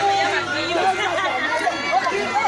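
Crowd chatter: several voices talking and calling out over one another, with a steady low hum underneath.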